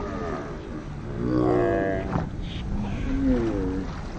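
Two long, drawn-out wordless calls from an excited onlooker: the first is the louder, and the second, near the end, falls in pitch. They sound over a steady rumble of wind and water on the microphone.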